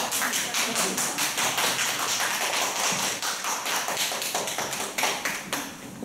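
Applause from a small audience: a scattered round of hand claps that starts abruptly and thins out near the end.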